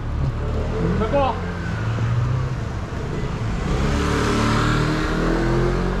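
A car engine running with a steady low hum, its pitch rising slowly from about four seconds in as it accelerates. A brief voice comes about a second in.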